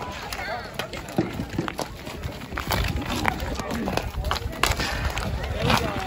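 Street hockey sticks clacking and knocking against the ball and the asphalt in scattered sharp hits, with players and onlookers calling out.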